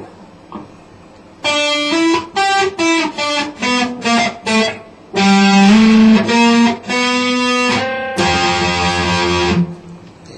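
PRS electric guitar playing an E-minor practice étude: after about a second and a half of quiet, a quick run of single picked notes, then a few longer ringing notes and one held note that is cut off shortly before the end.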